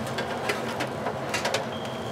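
Steady low electrical hum from the rack equipment, with a few faint clicks and taps as cables and connectors are handled. A thin, steady high tone starts near the end.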